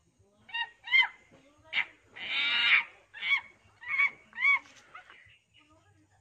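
A goose honking: about seven short calls that rise and fall in pitch over some four seconds, with one longer, harsher call in the middle.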